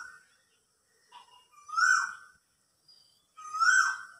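A bird calling three times: short calls about two seconds apart, each dropping slightly in pitch.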